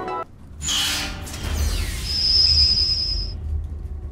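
Music breaks off just after the start, and a logo-animation sound effect follows: a whoosh about half a second in with a falling sweep, over a deep rumble. A steady high ringing tone joins at about two seconds and stops shortly after three.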